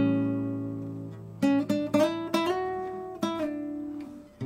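Classical guitar playing a chord solo: a fingerpicked chord rings out and fades, then, about a second and a half in, a short run of single plucked notes picks out a melody line.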